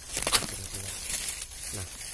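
Dry leaves and twigs in forest undergrowth rustling and crackling as the brush is pushed aside, loudest in a sharp burst about a third of a second in.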